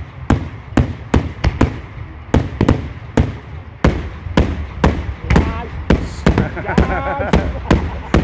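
A rapid barrage of aerial fireworks shells bursting in loud, sharp bangs, about two to three a second without a break.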